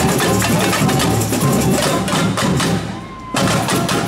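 A samba bateria playing a fast, driving beat: surdo bass drums, snare drums and sharp, clacking tamborims. About three seconds in, the playing briefly thins and drops before the full band comes crashing back in.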